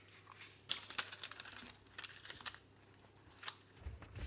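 Baking paper crinkling under hands stretching and smoothing a thin sheet of dough over a lined baking tray: scattered short crackles, thickest about a second in, with a few more later.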